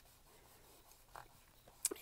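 Faint rubbing of a soft white vinyl eraser on paper as pencil lines are erased, with one short sharp click near the end.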